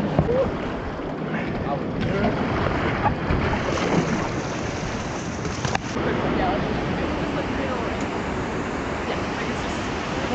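Rushing whitewater of river rapids: a steady, even noise of churning water. There is a single short click about six seconds in.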